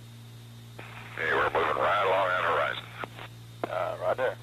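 A brief, unintelligible voice transmission over an old air-to-ground radio link, thin and cut off in the highs, over a steady low hum. Sharp clicks come as the transmission keys on and off.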